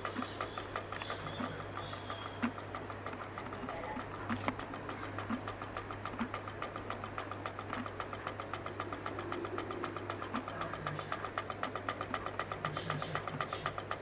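Homemade pulse motor with a CD rotor running, making a rapid, even ticking as magnets pass its coil and reed switch, over a steady low hum.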